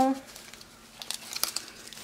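Small plastic bag of diamond painting drills crinkling faintly as it is handled, with a few light rustles and clicks from about one second in.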